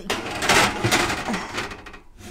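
Metal cookie sheet scraping and clattering as it slides onto an oven rack, a noisy rasp lasting nearly two seconds and loudest about half a second to a second in.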